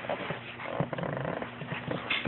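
A crawling baby making small, low grunting sounds.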